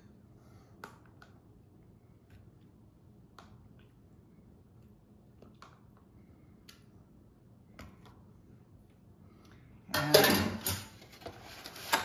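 A few faint clicks of a spoon against a plastic cup as salsa is scooped into a bowl of beaten eggs. Near the end comes about two seconds of loud plastic crackling and clatter as a plastic egg carton is handled and shut.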